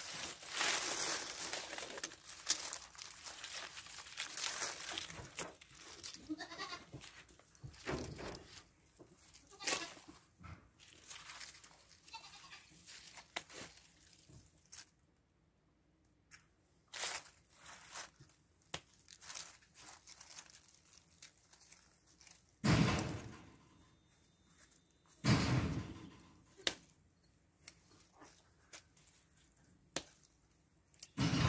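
Dry pea vines and dead leaves rustling and crackling as gloved hands pull them, with scattered sharp clicks of pruning snips cutting the stems at the ground. Two louder brief sounds come about two-thirds of the way through.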